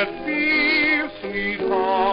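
A 1920s dance-band record playing: a melody with a strong, wavering vibrato over sustained band chords, with a brief dip in loudness a little past halfway.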